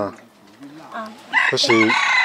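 A rooster crowing: one loud crow beginning about one and a half seconds in and running to the end, with a person's voice briefly overlapping it.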